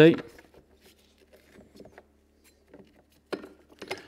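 Faint clicks and taps of a metal bolt and the scarifying cartridge being handled in the Cobra cordless scarifier's plastic housing, as the cartridge is worked back into line after the bolt was pushed in too far. A sharper click comes near the end.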